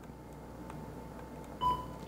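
A single short electronic beep from the JVC GY-LS300 camcorder about one and a half seconds in, as a button press opens a menu setting.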